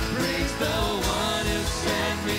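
Live worship band playing: a male lead singer sings the chorus over his own acoustic guitar, with drums keeping a steady beat.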